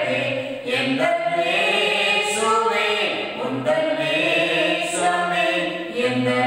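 A man's voice singing a hymn unaccompanied, in a slow melody of long held notes.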